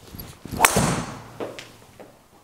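Golf driver swing and strike: a brief whoosh, then the sharp crack of a Cobra DarkSpeed driver head hitting a golf ball about two-thirds of a second in, followed by a fainter knock under a second later.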